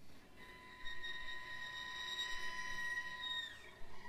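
A soft, high sustained note on violin and cello, held steady for about three seconds, then sliding down in pitch near the end.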